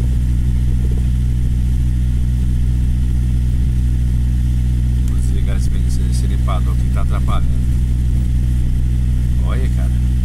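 An engine idling with a steady, unchanging low drone. Faint voices come in about halfway through and again near the end.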